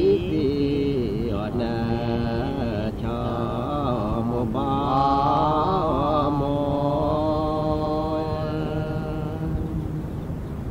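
A voice singing a slow, chant-like melody in long held notes that slide between pitches.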